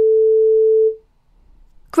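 A steady, single-pitch electronic beep that cuts off about a second in: the signal tone of an exam listening recording, marking the start of a replayed item.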